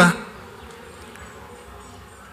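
A man's voice through a microphone ending a word, then a pause filled only with faint, steady background noise.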